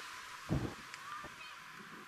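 A single short honk-like animal call about half a second in, followed by a few faint high chirps.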